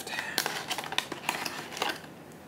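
Plastic blister-pack toy package being pried open from its cardboard backing: a run of irregular crackles and clicks of plastic and card.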